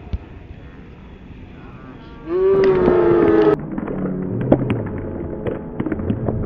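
A soccer ball kicked once, then a loud, held celebratory shout a couple of seconds later, dipping slightly in pitch before it cuts off suddenly. After the shout come crowd noise and scattered claps.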